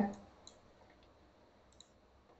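Two faint computer mouse clicks, about a second and a half apart.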